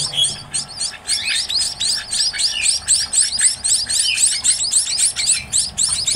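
A brood of young munia (emprit) chicks chirping: thin, high chirps repeated many times a second, coming faster and more evenly from about two seconds in.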